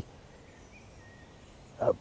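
Quiet woodland ambience with faint bird calls: a short curved note, then a thin held note just after it.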